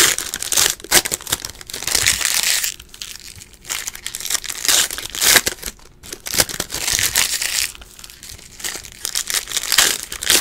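Foil wrappers of Panini Prizm basketball card packs being torn open and crinkled by hand, in several crackling bouts with short pauses between them.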